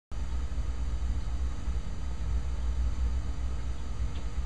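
A steady low rumble with a faint hiss over it and no distinct events: background noise in the room or from the recording.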